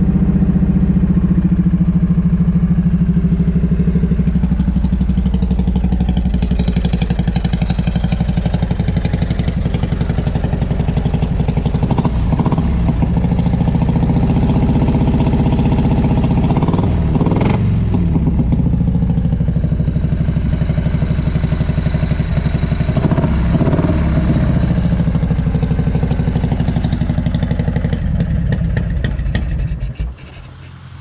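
Harley-Davidson motorcycle's V-twin engine idling with its regular firing pulse, given a few short throttle blips along the way, then shut off at the very end.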